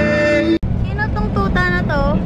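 A man singing a held note with acoustic guitar through a PA, cut off abruptly about half a second in. Then the low rumble of a car interior with a few short, high-pitched, sliding vocal sounds.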